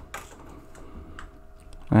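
Faint, irregular clicks of a computer keyboard, a few spread over the pause, over a low steady hum.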